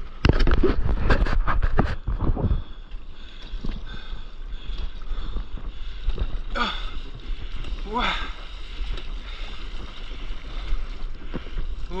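Loud rush and splashing of an ocean wave washing over a stand-up paddleboard and the camera at water level for about two and a half seconds, then quieter water noise and paddle strokes in the sea.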